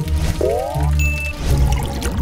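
Background music with a steady low beat, overlaid by a cartoon pouring sound effect: a quick gurgle that rises in pitch like a vessel filling. A short high ding follows about a second in.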